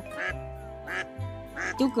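A mallard duck quacking several times in short calls, over background music with a steady beat.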